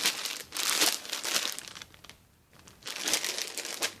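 Clear plastic polybag around a packaged sweatshirt crinkling as it is handled, in two bouts with a pause of about a second between them.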